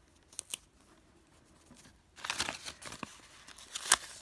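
Paper planner sticker sheet being handled: two small taps about half a second in, then crinkling and a peeling, tearing sound in the second half as a sticker comes off its backing, with the loudest sharp crackle near the end.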